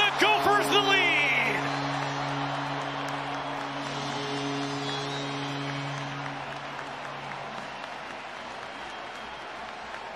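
Hockey arena crowd cheering a home goal, with the arena goal horn sounding a steady low tone over it that stops about eight seconds in; a higher horn tone joins briefly midway. The cheering fades slowly through the clip.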